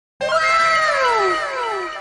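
A sound effect: a meow-like pitched cry that starts abruptly, arches up and falls in pitch, and repeats as a string of fading echoes.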